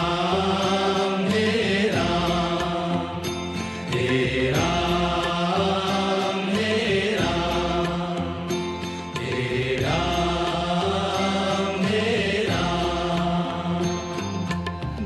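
Devotional Hindi bhajan music: a sung, chant-like phrase repeating about every two and a half seconds over steady instrumental accompaniment.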